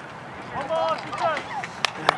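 Voices calling out across a baseball field, with one sharp clap near the end.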